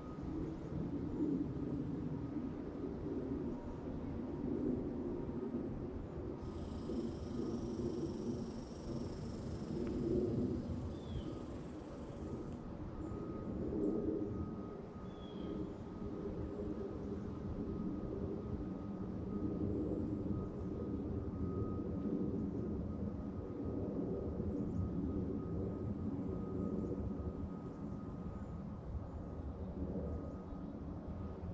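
Steady low drone of distant engines that swells and fades slightly, with a thin steady high tone over it. A high hiss lasts about six seconds near the middle, and two faint short chirps come a few seconds apart.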